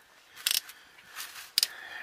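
Handling noise from a handheld camera being moved about under a vehicle: a short hiss about half a second in and a sharp double click just past one and a half seconds, with faint rustling between.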